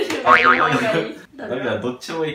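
Speech: young people talking excitedly, with one voice sliding sharply up and down in pitch about half a second in.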